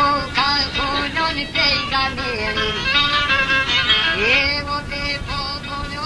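Albanian folk song: a male singer's ornamented, gliding melody over instrumental accompaniment that includes violin.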